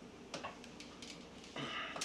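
Quiet handling noises from hands working on fittings inside an RC boat's hull: a light click about a third of a second in, then a short rustling scrape near the end.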